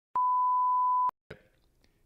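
A steady 1 kHz test-tone beep, the reference tone that goes with TV colour bars, held for about a second and cutting off sharply, followed by faint room sound.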